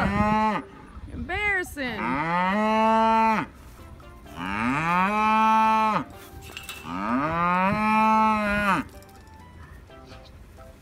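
A farm animal's moo-like calls: two short ones, then three long drawn-out ones, each rising, holding and then falling in pitch.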